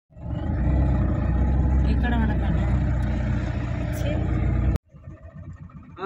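Vehicle engine and road noise rumbling steadily, with brief speech about two seconds in. The rumble cuts off suddenly near the end and is replaced by a much quieter one.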